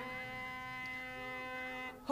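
A harmonium holding one soft, steady note between sung lines, cutting off just before the end.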